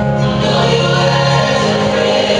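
Music with a choir singing sustained chords, the harmony shifting twice.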